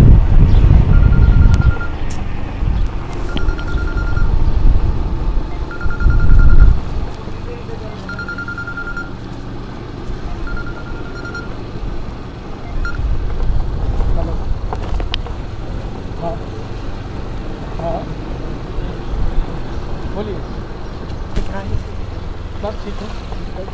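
Wind buffeting the microphone over the running of a two-wheeler riding down a street, loudest in the first two seconds and again about six seconds in. A high beep sounds five times, about every two and a half seconds, over the first half.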